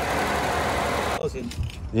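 Mercedes SLK320's V6 engine idling steadily with the hood open, running on a newly fitted fuel pump. A little past a second in, the running noise drops away abruptly, leaving a low rumble.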